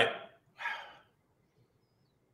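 A man's voice saying "all right", followed by a short wordless voiced sound, then quiet room tone.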